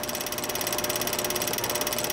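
A steady, rapid mechanical whirring clatter, about ten even ticks a second with a constant tone under it. It is the sound laid under the archive logo end card.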